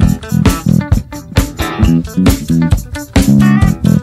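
Instrumental passage of a 1970s rock band recording: electric guitar and bass guitar playing over a steady drum beat, with no singing.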